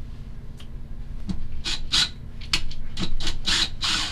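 Cordless drill run in short bursts into a wall shelf's mounting, a rasping, scraping sound repeating about twice a second from about a second and a half in, with a few faint clicks before it.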